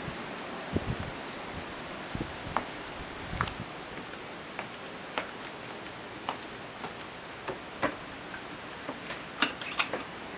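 Footsteps going up wooden deck stairs: irregular soft thumps and knocks, a few seconds apart, over a steady background noise.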